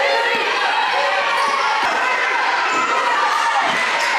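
A basketball being dribbled on a hardwood gym court, with the voices of players and spectators calling out over it.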